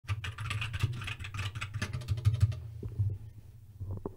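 Typing on a computer keyboard: a quick run of key clicks for about two and a half seconds, then a few scattered keystrokes before it goes quiet near the end.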